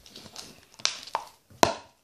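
A few light knocks and taps of plastic cups being handled and set down on a table, the loudest one about three-quarters of the way through.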